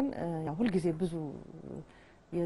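Only speech: a woman talking, with rising and falling intonation, pausing near the end.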